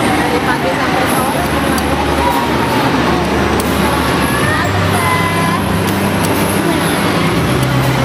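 Steady crowd hubbub of many overlapping voices in a shopping mall, with a low, steady hum underneath.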